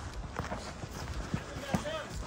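Footsteps on leaf-littered ground, a series of irregular steps. A distant man's voice calls out near the end.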